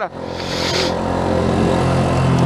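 Motorcycle engine running under way, with a steady low drone that grows stronger through the second half.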